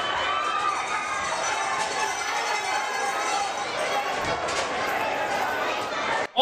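Wrestling arena crowd: many voices shouting and talking over one another in a steady din as a brawl spills into the seats.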